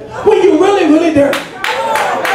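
A man's voice, rising and falling in pitch and amplified by a microphone, then hand clapping starting about a second and a half in, at a few uneven claps a second.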